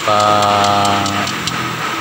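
A man's voice holding a long, drawn-out hesitation sound on one flat pitch for about a second, then trailing off, over a steady background hum.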